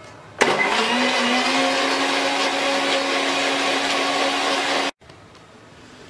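Electric countertop blender running, blending milk with broken Oreo biscuits and chocolate syrup into a frothy milkshake. The motor comes up to speed about half a second in, runs at a steady pitch for about four and a half seconds, and stops abruptly.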